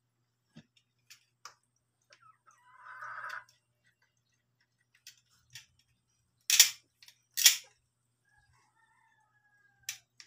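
Small handwork sounds of a cue-tip repair: scattered light clicks, a short rasp about three seconds in, then two loud sharp scrapes close together past the middle. A faint thin tone sounds near the end.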